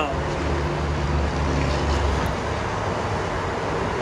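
A steady low hum under faint background noise.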